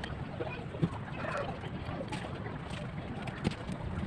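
A steady low background rumble, with light knocks from a glass bottle being handled on a work board as clay is pressed onto it: one about a second in and one near the end.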